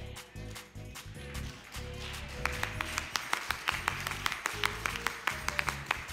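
Church band music: a throbbing bass drum and bass line under a few held keyboard notes, joined from about two seconds in by a fast, steady run of sharp percussive hits.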